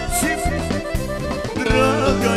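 Balkan folk band music: accordion and electric guitar playing over a steady beat.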